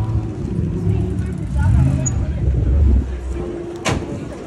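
A car engine running with a low rumble that swells for a second or so in the middle, among the voices of a street crowd, with a sharp click near the end.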